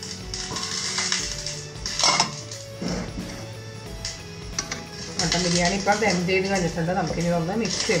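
A stainless steel lid clinks against a cooking pot as it is lifted off, with two sharp knocks about two and three seconds in, over background music.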